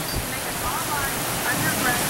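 Heavy downpour of rain: a steady, even hiss of rain falling on water and the dock, with wind.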